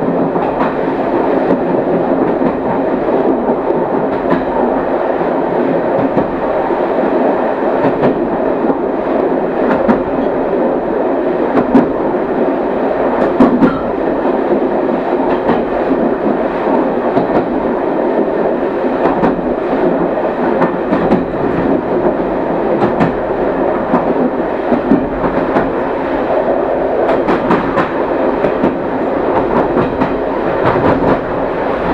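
A train running on rails, heard from the driver's cab: a steady rumble of wheels and running gear, with scattered sharp clicks as the wheels cross rail joints and switches.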